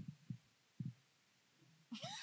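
Near silence, broken by a few soft low thumps in the first second, typical of a handheld microphone being handled.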